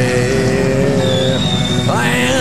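Live Irish folk-rock band playing an instrumental passage between sung lines, with long held notes over a busy rhythm accompaniment and a high held note joining about halfway through.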